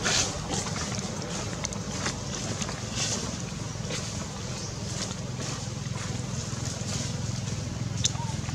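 A steady low hum like a distant motor, with scattered short rustles and clicks from dry leaves.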